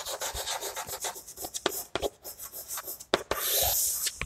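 Chalk scratching on a blackboard as a word is written in short strokes, with one longer, louder continuous stroke near the end.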